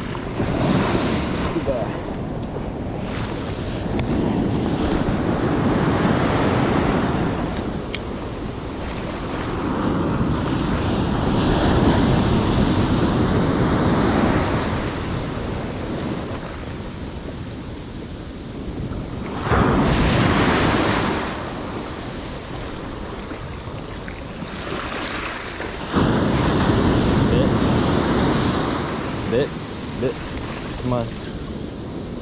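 Ocean surf washing up the beach in swells that rise and fall every few seconds, with wind buffeting the microphone.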